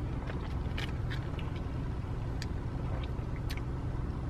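Steady low rumble of a car idling, heard inside the cabin, with a few faint clicks and sips as an iced coffee is drunk from a plastic cup.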